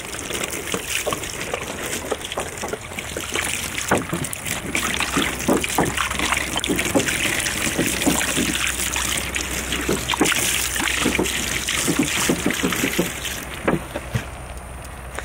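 Water poured from a plastic gallon jug, splashing and trickling over a .50 caliber rifle and the plastic table beneath it, with many small splashes throughout.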